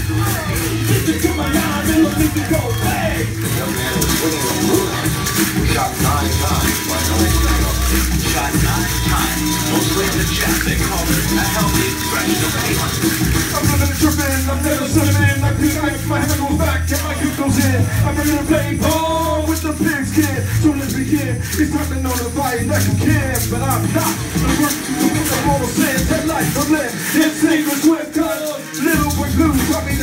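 Live hip hop music: a steady beat with heavy bass through the PA, with hand-held rattles shaken along to it. The bass drops out briefly near the end.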